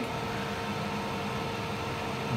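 Steady hum and hiss of the powered-on Canaweld Multi-Process 201 SLM welding machine with its cooling fan running, at an even level with a few steady tones and no clicks.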